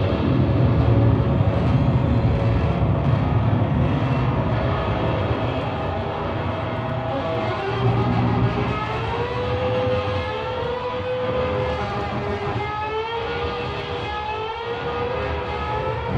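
Live rock band music at full volume. From about halfway through, a lead line slides up and down in pitch in siren-like glides over a low rumbling drone.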